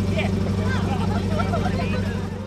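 Rally car engine idling steadily, with people talking close by.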